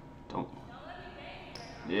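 Faint bounces of a basketball on a hardwood gym floor, with one sharper bounce about half a second in.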